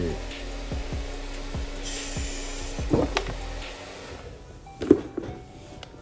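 Background music with a steady beat, then the clipper box handled with a few knocks and bumps. The loudest bump comes about five seconds in, as the dropped box is picked up off the floor.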